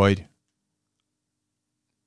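A man's voice finishing a spoken word in Norwegian, then silence.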